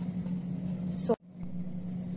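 A steady low hum, like a small motor or fan running, with a brief hissy noise about a second in just before a sudden short drop-out.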